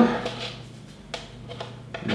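Marker drawing on a whiteboard: a few light taps and clicks, the clearest about a second in, over a low steady hum.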